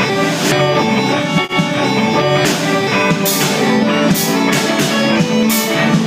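Live rock band playing: electric guitar, bass guitar, keyboard and drum kit. The drums and cymbals drop out for about two seconds near the start, with a brief dip in the sound, then come back in.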